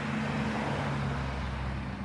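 Outdoor background noise: a broad rushing sound that swells and fades, over a steady low hum, with a deeper rumble growing in the second half.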